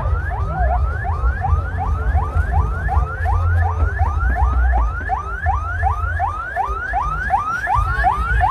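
Electronic siren sounding a fast repeating whoop: each note rises in pitch and drops back, about three times a second, steady throughout. A low rumble runs underneath.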